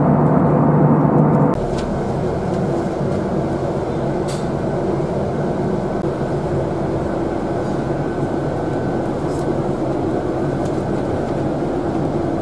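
Airliner cabin drone from the jet engines, steady with a strong low hum, cutting off abruptly about a second and a half in. Then steady engine and road rumble heard from inside a double-decker bus riding in city traffic, with a faint steady hum and a few light clicks.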